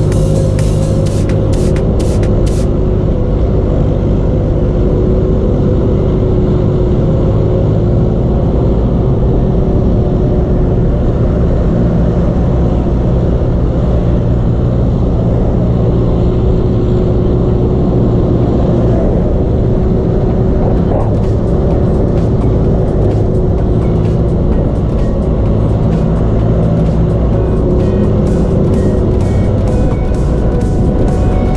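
Motorcycle engine running steadily at cruising speed, with wind and road noise on the microphone.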